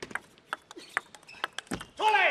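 Table tennis ball clicking sharply against rackets and the table in a fast rally, a string of separate clicks, with a dull thump near the end.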